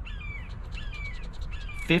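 A coin scraping a scratch-off lottery ticket in a quick run of scratchy strokes from about a second in, while birds call repeatedly with short falling chirps in the background.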